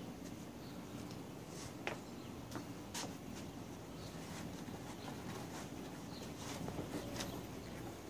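A few faint, light clicks and taps of hands handling the steering shaft's universal joint under a car's hood, over a low steady hum.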